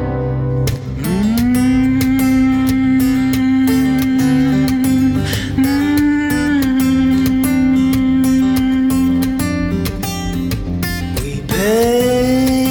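Instrumental stretch of a folk song: a steadily strummed acoustic guitar under a long held melodic line that slides up into its note about a second in and again near the end.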